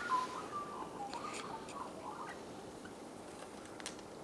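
Faint bird calls: short pitched chirping notes during the first couple of seconds, then a few faint clicks over quiet background hiss.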